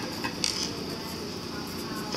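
Graphite pencil scratching on paper in a few short strokes while writing letters along the edge of a grid, over a faint steady hiss.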